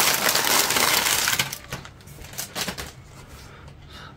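Clear plastic bag crinkling loudly as plastic kit sprues are handled and pulled out of it, dying down after about a second and a half to faint rustling with a few small clicks of plastic parts.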